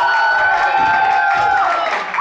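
Audience cheering, with several long high-pitched whoops held over one another that die away near the end.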